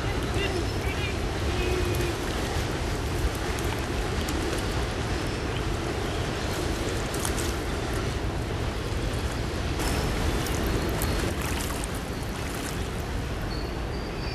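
Steady rushing of flowing stream water around a wading angler, with a few short sharp noises in the second half.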